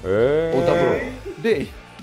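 A man's drawn-out vocal sound, rising then falling in pitch over about a second, then a few short spoken syllables.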